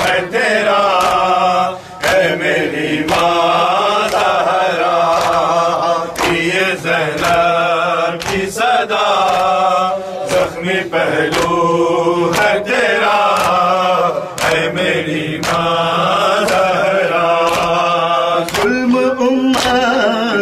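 Men's voices chanting a nauha (Shia lament) together, over sharp hand strikes on their chests that keep a steady beat of roughly two a second: matam.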